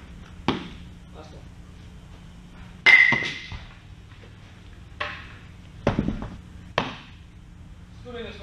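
Baseballs hitting catchers' mitts and protective gear in a catching drill: five sharp knocks a second or two apart. The loudest, about three seconds in, has a brief metallic ring.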